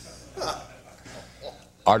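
A man's quiet, breathy chuckle, a few short puffs of breath with the largest about half a second in.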